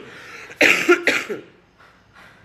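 A woman coughing twice in quick succession into her hand, about half a second in.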